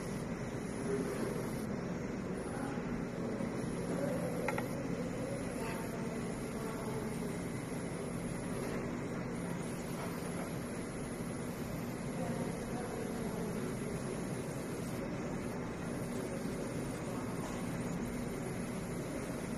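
Steady hum and hiss of a coffee bar's background machinery and room noise, even throughout, with no distinct event; the milk pour itself is not heard.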